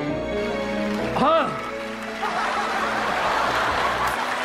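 Studio audience applauding and cheering over soft romantic background music. A loud drawn-out vocal exclamation rises and falls in pitch about a second in, and the applause swells up about two seconds in.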